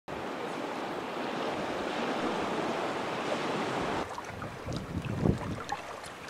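Sea surf washing steadily, with wind, for about four seconds, then cutting off suddenly to a quieter sound with a few scattered knocks and thumps.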